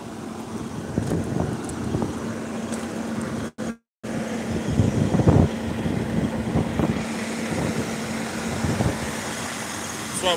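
An engine idling with a steady hum, under rough noise and a few louder knocks about five seconds in. The sound drops out completely for about half a second around three and a half seconds in.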